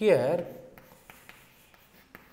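Chalk writing on a chalkboard: faint short scratches and taps as the letters of a word go on the board, after a spoken word at the start.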